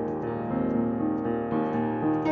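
Solo upright piano playing a slow, soft passage: held chords with a few new notes struck over them.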